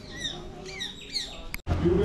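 Birds chirping in a tree: a rapid series of short, sweeping chirps that cuts off suddenly about a second and a half in.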